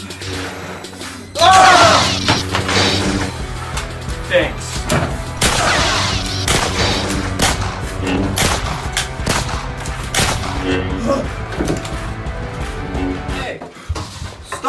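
Background music with a steady bass line runs throughout. A man yells about one and a half seconds in, and a rapid run of sharp hits and thuds follows through the rest.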